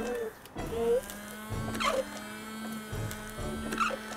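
Citroën CX windscreen washer pump and wipers running, with a steady electric hum that starts about a second in as fluid is sprayed onto the glass and the wiper blades sweep it.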